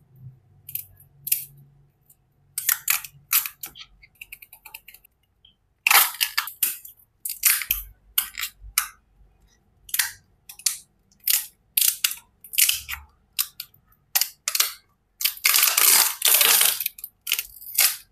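Crinkling and crackling of plastic as acrylic standee pieces are pressed out of their acrylic sheet and handled. The sound comes as many short crackles, with a longer run of crinkling about fifteen seconds in.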